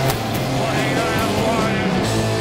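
Live punk rock band playing loud, with bass, distorted guitars and a shouted vocal.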